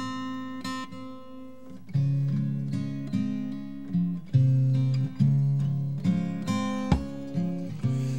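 Solo acoustic guitar playing a slow chordal part, a new chord or note picked every half second or so, softly at first and fuller from about two seconds in.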